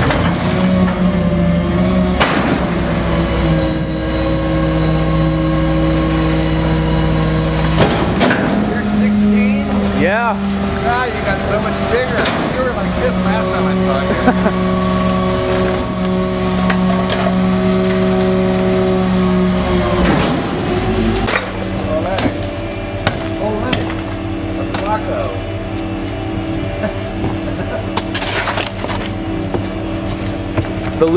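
Packer cycle of a Pak-Mor rear-loader garbage body on a gasoline GMC C7500: the engine and hydraulics run steadily as the blade sweeps the hopper. The note changes about eight seconds in as the stroke changes, and settles lower about twenty seconds in as the cycle ends. A few sharp knocks of metal and trash come through along the way.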